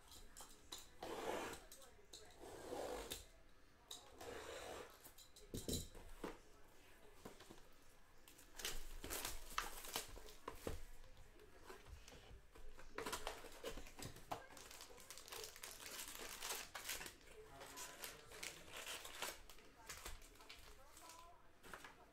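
A cardboard trading-card hobby box being cut open and unpacked: scraping and tearing of cardboard, scattered taps and clicks, and crinkling of foil pack wrappers.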